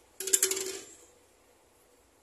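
A plastic water bottle dropping onto a tiled floor: a quick rattling clatter of small bounces with a brief ring, lasting about half a second from a quarter second in.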